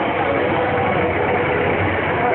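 A motor vehicle's engine running steadily at low speed, with a dense, even background noise and faint voices.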